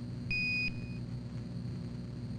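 A single short, high electronic beep a third of a second in, with a fainter tail, over a steady low electronic hum.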